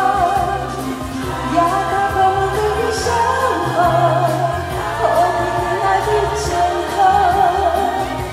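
A woman singing into a microphone through a PA over backing music. She holds long, wavering notes with vibrato above a steady low bass line.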